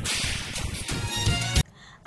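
Dramatic film sound effect: a sudden swish of noise, then a short burst of music that cuts off abruptly about a second and a half in.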